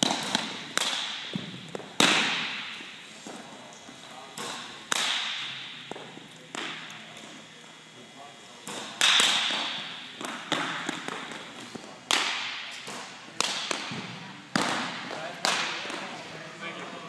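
Pitched baseballs smacking into catchers' mitts, about a dozen sharp pops at uneven gaps of one to three seconds. Each pop rings on in the echo of a large gym.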